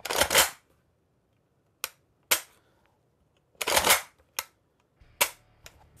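Metallic clacks and clicks from the action of an Inter Ordnance XP AK-style shotgun being cycled and dry-fired to show its full trigger reset. Two longer clacks come at the start and about three and a half seconds in, with single sharp clicks between and after them.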